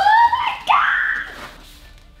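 A woman's excited vocal exclamation: a drawn-out rising "ooh" followed by a short high squeal, dying away about a second and a half in.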